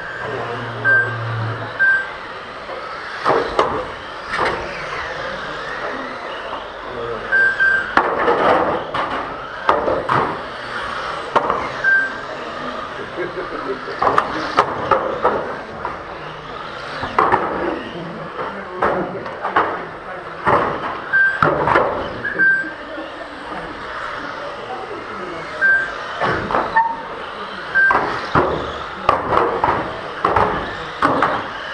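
Electric 1/12-scale GT12 RC cars racing on an indoor carpet track: repeated sharp knocks as cars strike the barrier boards, and short high single beeps from the lap-timing system every few seconds as cars cross the line, in an echoing hall with indistinct voices.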